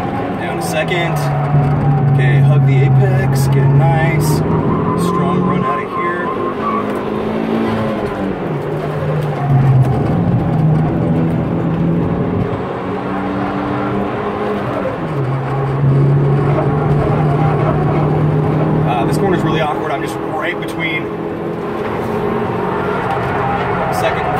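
Turbocharged 2002 Hyundai Tiburon's 2.0 L four-cylinder engine pulling hard on track, heard from inside the cabin. Its pitch holds steady for a few seconds at a time, then rises and falls several times as the revs change between corners.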